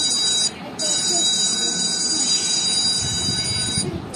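Smartphone sounding its find-phone alert, set off from a paired i8 Pro Max smartwatch: a loud, steady, high-pitched ringing tone that breaks off briefly about half a second in and again near the end.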